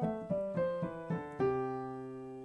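Piano played with both hands at once, a C major scale in the left hand against a G major scale in the right, about three notes a second. It ends on a held chord about one and a half seconds in that rings and fades.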